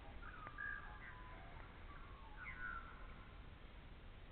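Faint bird calls: short whistled notes with quick pitch glides, in two bunches, one just after the start and another a little past the middle.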